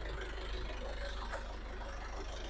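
Belarus 85 HP tractor's diesel engine idling with a low, steady hum.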